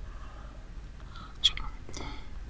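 A pause in a man's speech: faint room tone and low hum, then a soft breath and a quietly spoken word with a short hiss near the end.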